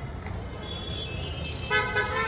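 Steady low background rumble, with a vehicle horn starting to sound as one steady held tone near the end.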